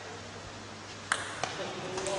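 Table tennis ball in play: two sharp clicks about a third of a second apart, a little over a second in.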